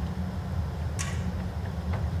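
Steady low hum of an indoor arena, with one short sharp click about a second in.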